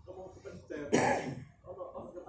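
A man clearing his throat with a harsh, cough-like hack about a second in, with a few low murmured words around it.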